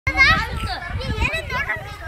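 Several children's high-pitched voices talking and exclaiming over one another.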